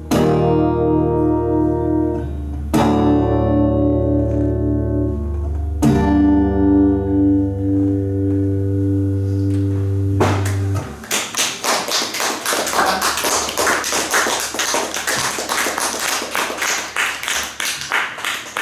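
Three strummed chords on an amplified archtop guitar, each left to ring out over a low sustained note. The music stops about ten seconds in and is followed by audience applause.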